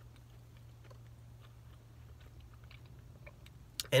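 Faint chewing of a mouthful of Pop-Tart pastry: soft, scattered little mouth clicks over a steady low hum.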